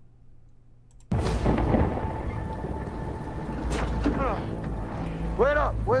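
A quiet second, then a movie trailer's soundtrack starts suddenly: a steady rushing noise over a deep rumble, with a man's short line of dialogue near the end.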